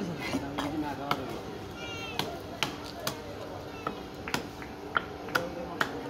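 Knife chopping and striking a tilapia on a wooden log chopping block: a string of sharp, uneven knocks, about two a second.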